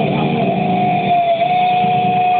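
Live heavy metal band heard from within the crowd through a small camera microphone, muffled and dull, with one high note held steady, dipping slightly near the end, over the distorted guitars.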